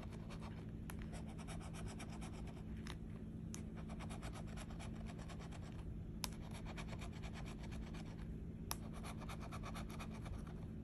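A scratcher tool scraping the coating off a scratch-off lottery ticket in quick, repeated strokes, with a few sharper ticks along the way. It is faint.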